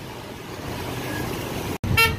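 Steady noise of motorbike traffic passing close by, broken off abruptly by a brief dropout near the end.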